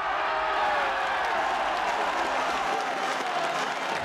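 Stadium crowd cheering and applauding a goal just scored, a steady wash of noise that eases slightly near the end.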